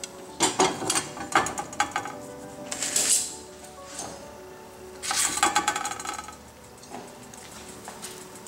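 Soft background music with a few sharp clinks and scrapes of a utensil against a plate: one about half a second in, one around three seconds, and a short cluster around five seconds.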